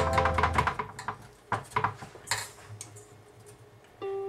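Strummed acoustic guitar music that stops a little under a second in, followed by a few light taps and scrapes of hands working a dry sugar rub onto meat in a stainless steel pan, against a quiet background.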